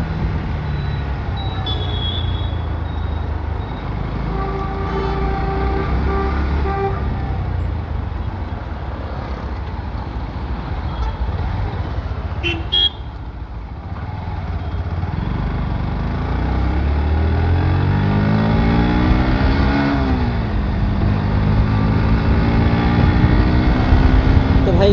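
Bajaj Pulsar NS125 motorcycle's single-cylinder engine running on the move, with wind noise over it. A vehicle horn sounds for a couple of seconds a few seconds in, and there is a sharp click about halfway. Near the end the engine revs climb steadily, drop at a gear change and settle higher.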